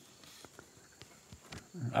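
A pause in a man's talk, fairly quiet, with a few faint short clicks, then his voice starting again near the end.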